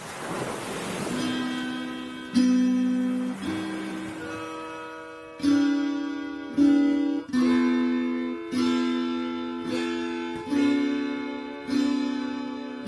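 Background music on acoustic guitar: single plucked notes, then chords struck about every second or two, each ringing and dying away. A wash of noise fades out in the first second.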